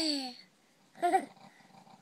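A baby's vocalizing: a loud cry-like call that falls in pitch at the start, then a shorter, wavering call about a second in.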